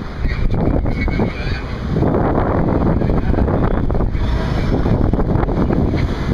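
Wind buffeting the camera microphone over the steady noise of passing street traffic.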